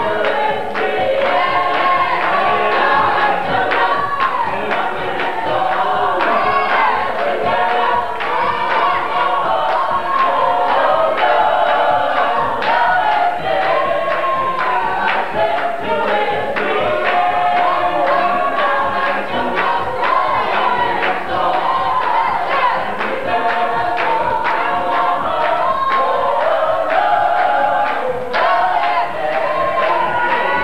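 Congregation singing a gospel song together, with a steady beat of hand clapping.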